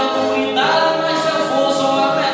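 Northeastern Brazilian cantoria: a singer holds long, sliding sung notes over strummed violas.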